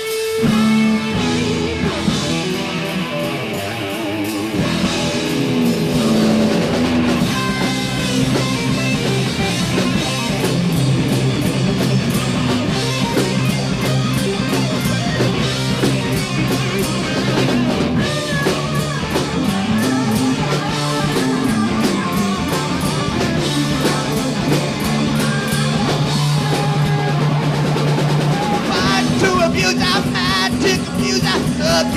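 Heavy metal band playing live: electric guitars, bass and a drum kit playing together, loud and steady throughout.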